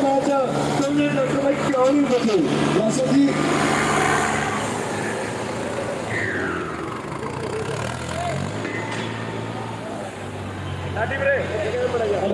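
Diesel tractor engines running hard under load as two tractors chained back to back pull against each other in a tug-of-war. A voice talks over them in the first couple of seconds.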